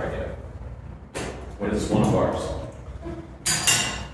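Metal ammo can's latched lid being snapped open, with one sharp metallic clack about three and a half seconds in.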